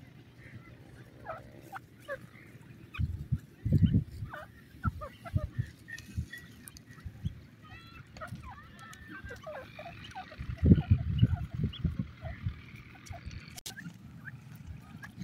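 A group of grey francolins giving many short, high chirping calls, scattered all through. Low rumbling bumps come in two clusters, a few seconds in and again past the middle, louder than the calls.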